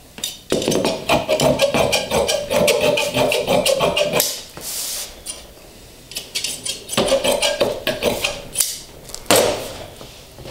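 Upholstery shears snipping through fabric in a fast run of cuts for a few seconds. The cloth swishes as it is moved, and there is more snipping near the end.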